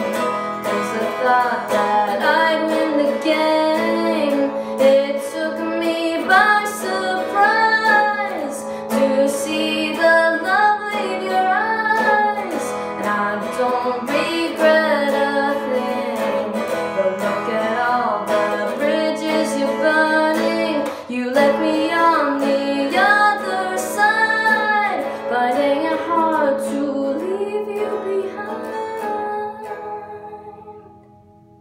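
Female voice singing a melody over guitar, fading out near the end.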